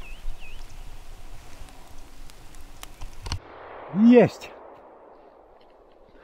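Quiet open-air ambience with a few faint high chirps near the start. About four seconds in comes a man's short, loud exclamation that rises and falls in pitch.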